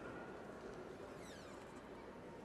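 Faint, steady background noise of a competition hall, with one faint falling whistle-like glide in the second half.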